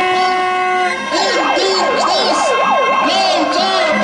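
A siren sounding, its pitch sweeping rapidly up and down for about two seconds from a second in, over steady tones and voices.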